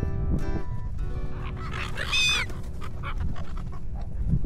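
Seagulls calling as they crowd to be fed: one loud arching squawk about two seconds in, then a few short calls. There is a constant low rumble of wind on the microphone.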